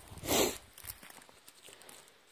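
A short rustle of handling noise about half a second in, as the phone is moved against clothing, followed by a few faint ticks.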